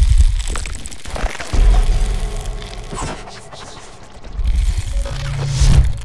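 Music for an animated logo intro, built on deep bass booms: one at the start, another about a second and a half in, and a low swell near the end, with crackling and whooshing effects over them.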